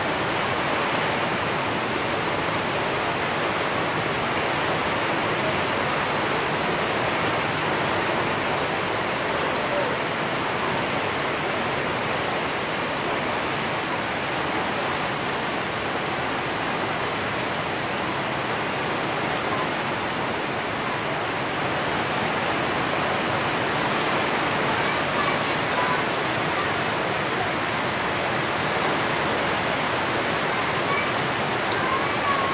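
Heavy storm rain falling in a steady downpour on trees, plants and a roof, with runoff pouring off the roof edge.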